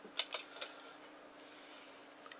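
A few light clicks of small plastic and rubber parts of a Motorola MTS2000 handheld radio being handled and fitted together, bunched in the first half-second or so, over a faint steady hum.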